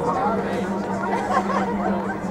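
People chattering, several voices talking, over a steady low hum.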